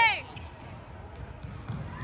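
A player's loud shout ends just after the start. It gives way to the quieter background of a large sports hall, with soft thuds of players' feet running on the wooden court.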